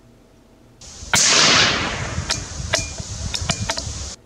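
A single .17 HMR rifle shot from a Savage 93R bolt-action, sudden and loud about a second in, with its report ringing out and trailing off. It is followed by a quick run of sharp clicks.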